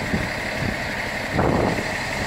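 Concrete mixer truck running, its diesel engine giving a steady rumble under a steady high whine, swelling briefly about one and a half seconds in.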